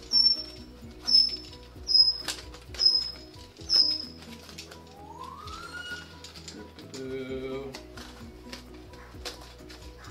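A box cutter sawing through closed-cell foam tubing, the blade squeaking through the foam in five short, high squeaks about a second apart, with quieter cutting after that.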